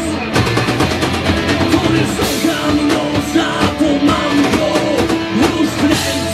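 Rock band playing live, loud and continuous: drum kit, electric guitar and a singer's vocals.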